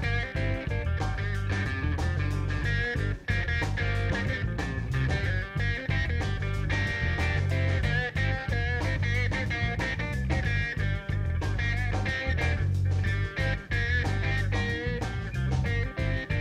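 Live rock band playing an instrumental passage without vocals: a Telecaster-style electric guitar plays a wavering melodic line over a second guitar, bass and a steady drum beat.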